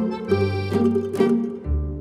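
Background music: pitched instrumental notes over a deep bass line, with a steady beat of note attacks about twice a second.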